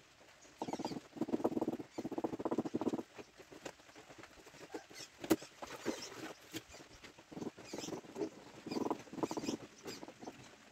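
Rapid rubbing and scraping across a tiled surface in short bursts of about a second each, from tiling work on the freshly laid tiles. There is a single sharp click about five seconds in.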